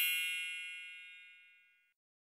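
The ringing tail of a bright, bell-like chime that was struck just before, several high tones fading steadily and dying away after about a second and a half.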